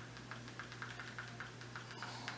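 A quick, uneven run of faint light clicks, about four or five a second, from the buttons of a Fire TV remote being pressed to move through the on-screen search menu. A steady low hum runs underneath.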